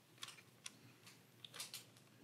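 A handful of faint, light ticks from a thin screwdriver and tiny screws handled against the SSD drive caddy while the drive is being screwed into it.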